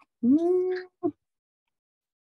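A woman's drawn-out wordless voice sound, like a puzzled "hmm" or "ooh", rising in pitch and then held for about half a second, followed by a short blip.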